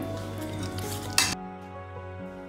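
Metal fork stirring a thick yogurt-and-spice marinade in a stainless steel bowl, with wet scraping and one sharper clink of fork on bowl just over a second in. The stirring then drops away under background music.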